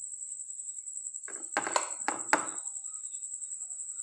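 A metal spoon knocking and scraping on a ceramic plate, about four short clinks in quick succession around the middle, as chicken filling is spooned out. A steady high-pitched whine sounds throughout.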